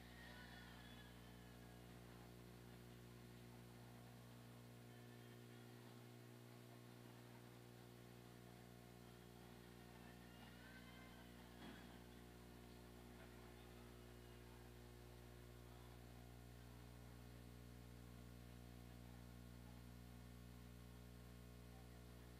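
Near silence: a steady low electrical hum, with faint distant voices now and then and a single click about twelve seconds in.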